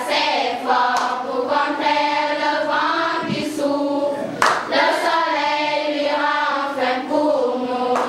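A choir of schoolgirls singing a song together in sustained, continuous phrases, with one sharp knock about four and a half seconds in.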